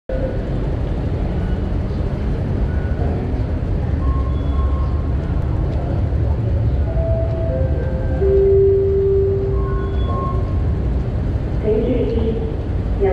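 Underground metro station concourse ambience: a steady low rumble with a hubbub of distant voices and scattered short tones, one held longer about eight seconds in.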